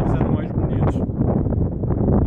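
Wind buffeting the microphone in a steady low rumble, with a voice finishing a sentence at the start and speech going on underneath.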